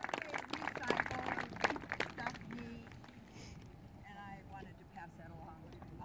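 Speech: a woman's voice talking to a group outdoors, loud at first with some sharp clicks mixed in, turning to fainter, more distant talk after about two seconds.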